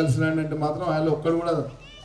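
Only speech: a man speaking into a handheld microphone, pausing near the end.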